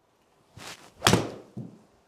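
A golf iron swinging through and striking the ball with a sharp, clean crack about a second in, after a short swish; the contact sounded good, the sign of a solidly struck shot. A softer thump follows about half a second later.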